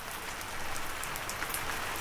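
Rain falling: a steady hiss with faint scattered drop ticks.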